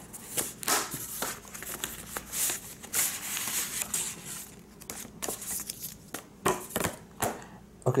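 Paper and thin card rustling and sliding as a stack of printed brochures is pulled out of a cardboard folder's pocket, with a series of short taps and scrapes against the table.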